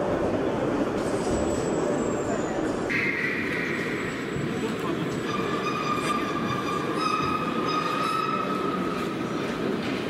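Small electric motor of an automatic ice-fishing jigging device whining as it jigs the rod on a preset program. The whine changes character suddenly about three seconds in, and from about halfway it holds a steady pitch that stops and restarts a few times as the device changes its jigging frequency on its own.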